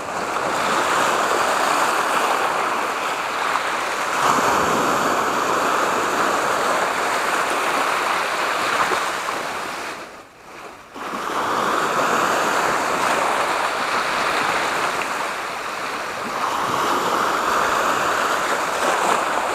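Sea waves breaking and washing over shoreline rocks, a steady rush that surges several times, with a brief lull about ten seconds in.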